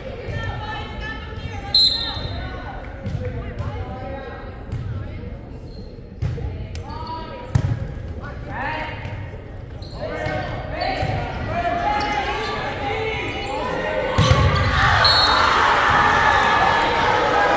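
Volleyball rally in an echoing gymnasium: the ball is struck a few times with sharp smacks while players call out and spectators talk. There is a short whistle blast near the start and another near the end, and the crowd noise swells into cheering as the point ends.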